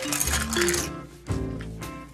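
Small plastic toy parts clattering onto a wooden tabletop as they are tipped out of a plastic bag, in the first second, over background music with a steady beat.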